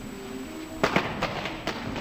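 Close-range martial-arts exchange: about five sharp, irregularly spaced smacks of blows and hands landing, starting near the middle, over steady background music.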